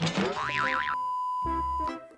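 An edited-in cartoon boing sound effect used as a transition: a quick whoosh, then a tone that wobbles rapidly up and down and settles into a held beep that stops just before the end. Background music with a repeating low beat plays underneath.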